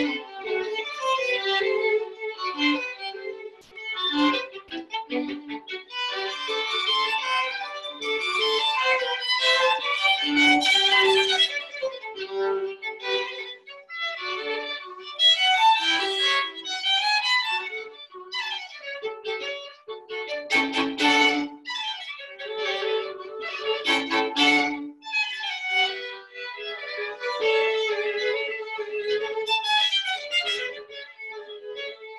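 Two violins playing a duet, a busy passage of quick notes from both instruments.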